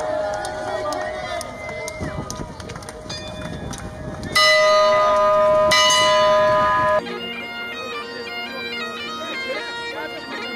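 Bagpipes playing over street crowd noise, the drone held steady under the chanter. About two-thirds of the way through, the crowd noise drops away and a clean bagpipe tune carries on, its notes stepping over a constant drone.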